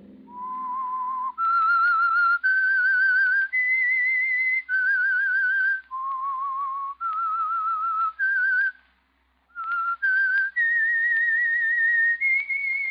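A person whistling a slow melody, about a dozen held notes each with a wavering vibrato, rising and falling, with a brief silence about nine seconds in: the whistled signature theme of the radio series.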